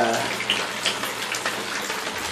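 Steady splashing of water coming through a leaking roof, with a few faint drip ticks over the hiss.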